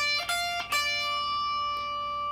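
Clean electric guitar, a Stratocaster-style guitar, playing three single picked notes on the high E string: D at the 10th fret, F at the 13th, then D again. These are notes of the D blues scale. The last D rings on and slowly fades.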